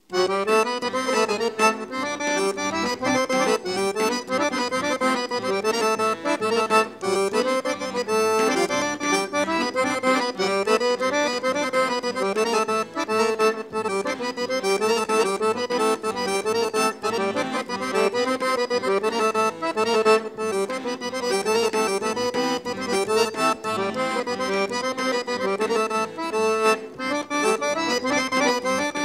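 Live accordion-led Bulgarian folk dance music, striking up suddenly at the outset and then running on in a fast, even dance rhythm.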